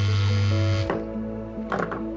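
Background music score of sustained held notes over a low drone; the drone drops out about a second in while the higher held notes carry on.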